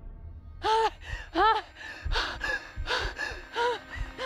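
A woman gasping for breath in short panicked pants, each breath voiced with a brief rise and fall in pitch; the two loudest come in the first second and a half, then quicker, fainter ones follow. She is hyperventilating, gulping air.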